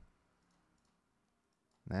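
Near silence with a few faint clicks, as of a mouse or stylus picking a colour in a drawing program. The tail of a man's speech is at the start and one short word near the end.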